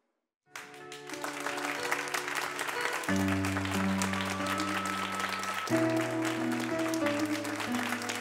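Audience applauding over background music with held chords. Both begin about half a second in, after a moment of silence.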